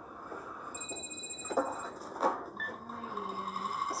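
A mobile phone ringing: a high electronic ring tone that lasts about a second, followed by a couple of short knocks.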